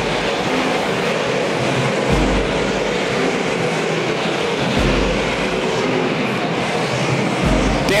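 Dirt modified race cars' V8 engines running at racing speed around the oval, a loud, steady, dense engine noise with a low rumble that swells about every two and a half seconds.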